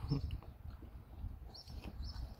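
A puppy chewing and tugging at a woven rag rug, with soft rustling and a few faint clicks. There is a brief louder low sound right at the start, and short high bird chirps come in near the end.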